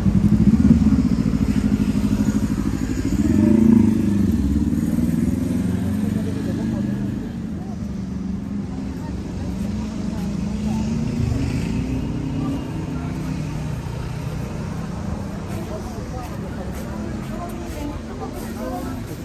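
A motor vehicle engine running close by, loudest in the first few seconds and rising in pitch about three to four seconds in, then settling into a steadier street traffic rumble.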